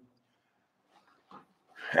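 A pause in a man's speech: near silence with two faint, brief sounds about halfway through, then his voice starts again near the end.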